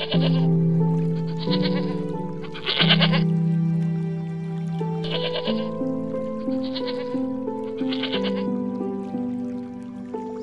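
A goat bleating six short, quavering bleats in two sets of three, over background music with long held notes.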